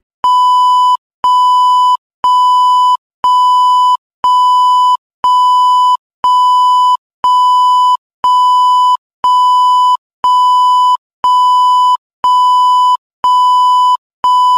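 A broadcast test tone of the kind played with colour bars, beeping about once a second. Each beep holds one steady pitch and lasts most of a second, with short silent gaps between.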